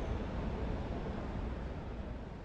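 Steady low rumbling noise with a hiss above it, without clear tones or rhythm.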